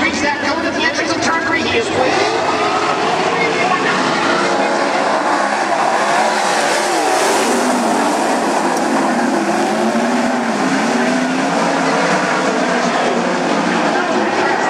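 A pack of 410 winged sprint cars racing on a dirt oval, many methanol-burning V8 engines running hard together at high revs, their pitch wavering up and down as they go through the turns.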